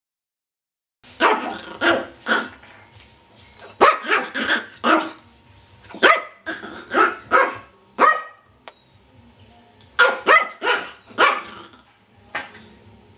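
Yorkshire terrier barking in quick bursts of three to five barks with short pauses between, starting about a second in.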